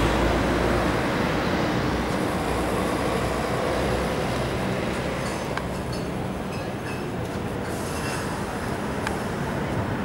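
A motor vehicle running with steady low rumble and road noise, slowly fading, with a couple of faint clicks in the second half.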